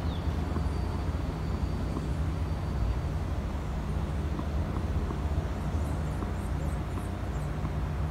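Steady low rumble of outdoor background noise, with a few faint high chirps near the end.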